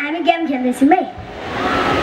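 A boy's voice through the stage microphone and loudspeakers, one short drawn-out vocal sound, followed by a steady rushing noise that swells toward the end.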